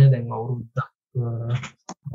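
Only speech: a man talking, with a couple of short pauses.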